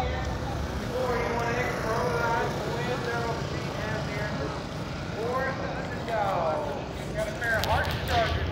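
Indistinct voices of several people talking over a steady low rumble.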